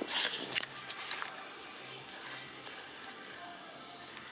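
A quiet lull in a small room: a few faint clicks in the first second, then only a low steady hum.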